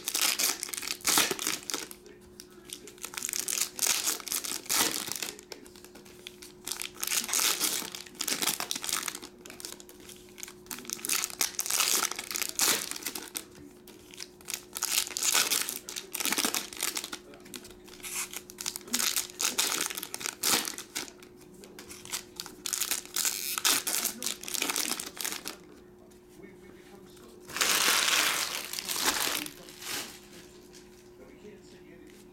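Foil wrappers of Donruss Optic basketball card packs crinkling and tearing as they are handled and ripped open, in repeated bursts every second or two. There is a longer, louder stretch of crinkling near the end.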